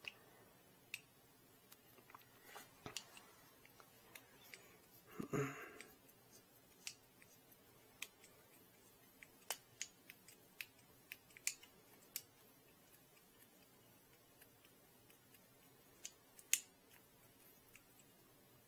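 Faint, scattered small clicks and taps of a screwdriver and 3D-printed plastic parts being handled while a screw is driven in by hand, with a brief louder rustle about five seconds in.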